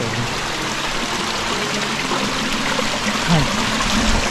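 Small stream running steadily: a continuous rush and trickle of water.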